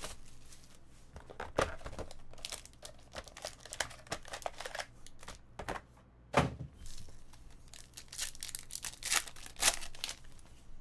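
Plastic shrink wrap and foil card-pack wrappers crinkling and tearing as they are pulled open by hand, in irregular crackly bursts. A single thump about six seconds in is the loudest sound.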